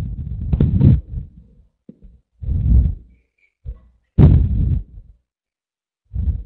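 Low, muffled rumbling bursts, each about a second long, four of them, like microphone handling or breath noise coming over an online-meeting audio line while a dropped connection is being restored.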